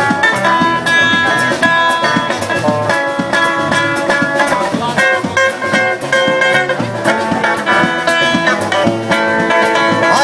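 Live trio of guitar, bass and drums playing an instrumental passage: guitar notes over a bass line and a steady drum beat with regular cymbal ticks.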